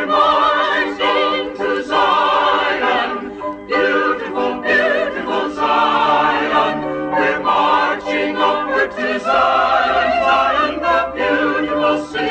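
A choir singing a hymn, the voices held in long notes with vibrato, phrase after phrase.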